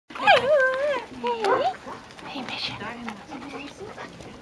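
A person's voice calling in high, drawn-out, sing-song tones that waver and glide in pitch, loudest in the first second and a half, followed by quieter short utterances such as "ja".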